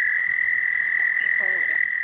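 Chorus of frogs calling from a breeding pond: a steady, unbroken high-pitched tone.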